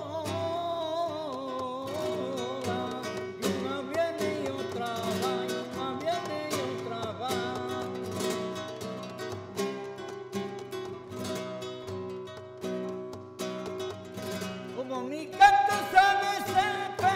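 Flamenco guitar, a nylon-string Spanish guitar, playing a solo passage of plucked and strummed notes between sung verses. A male flamenco voice ends a held line in the first second or so and comes back in loudly about fifteen seconds in.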